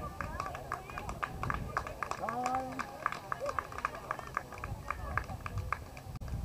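Indistinct voices of players calling out across an open softball field, with many short faint ticks throughout.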